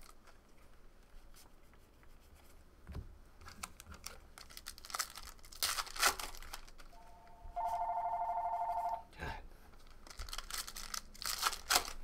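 Telephone ringing, one ring of about two seconds a little past the middle: it is the shop's phone going unanswered. Around it come short crinkles and tears from foil trading card packs being opened and the cards handled.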